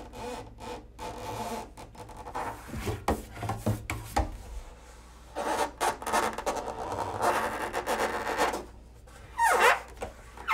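Hands rubbing and scraping across the wooden body of a double bass laid on its side, played as a percussion and friction instrument: irregular rasping strokes with a few low thuds about three to four seconds in. Near the end comes a pitched squeal that dips and rises again.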